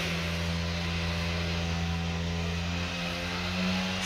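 A steady low mechanical hum with a pitched drone.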